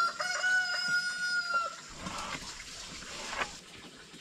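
A rooster crowing once, a single held call of under two seconds, followed by two light knocks.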